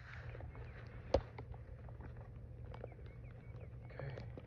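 Faint handling noises of hands getting out a bottle of liquid chalk: small ticks and rustles, with one sharp click about a second in, over a low steady outdoor rumble.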